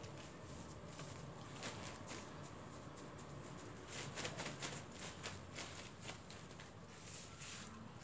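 Hands pressing potting soil into a black plastic polybag: faint rustling and gritty scraping, with a quick cluster of small crackles and ticks around the middle, over a low steady background hum.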